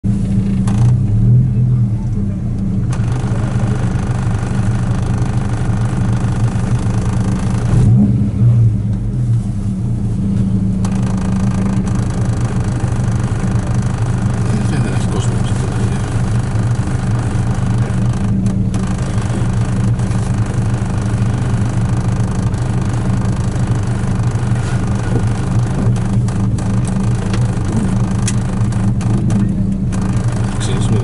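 Volkswagen Golf GTI rally car's four-cylinder engine running steadily, heard from inside the cabin, with two short blips of the throttle, one about a second in and one about eight seconds in.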